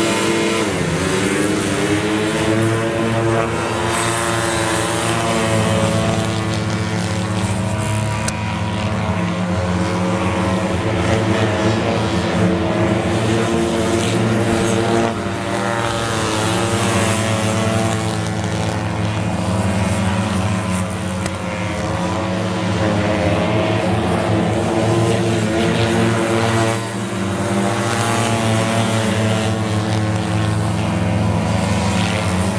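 A pack of mini-speedway motorcycles racing: the engines rev hard at the start, then run flat out around the track, their pitch repeatedly rising and falling.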